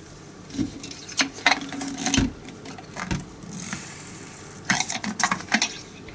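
Light clicks, taps and rustling of gloved hands handling a plastic syringe and a bottle of cleaning solution. There is a soft thump a little after two seconds and a quick run of clicks near the end.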